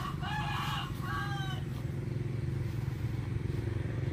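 A chicken calls twice in quick succession about a second and a half in, over the steady low hum of a small engine idling.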